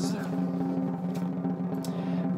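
Drum roll: a steady, fast roll held on one low pitch, the suspense roll before a winner is named.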